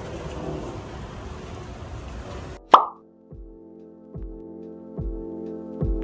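Background music mixed with a steady noise that cuts off abruptly about two and a half seconds in, at a short, sharp pop with a quick falling pitch: an editing transition sound effect. After it the music carries on more cleanly, with sustained notes over a low beat a little more than once a second.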